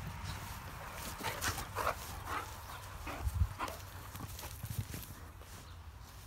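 Dogs at play making a string of short, sharp sounds, about seven in the first five seconds, with a low thump about three seconds in.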